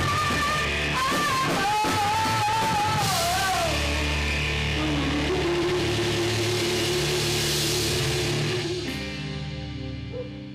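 Live rock band: a woman's belted, wavering vocal line over drums, cymbals and bass guitar, sliding down about three seconds in. A long held note follows, and the music ends and dies away near the end.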